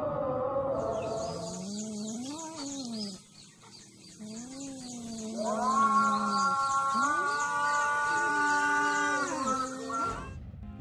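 Adhan (Islamic call to prayer) chanted in long, sliding held notes, the longest held for about four seconds near the end. Birds chirp steadily from about a second in.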